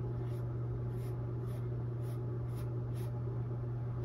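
Small paintbrush laying white acrylic onto a stretched canvas, short soft scratchy strokes about twice a second, over a steady low electrical hum.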